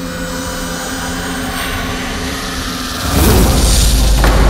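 Dramatic background score of a TV serial: a held drone of steady tones that swells about three seconds in into a loud, deep rumble.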